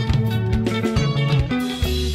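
Instrumental passage of Zimbabwean rhumba-style band music: plucked guitar lines over a walking bass guitar and a steady drum beat, with no singing.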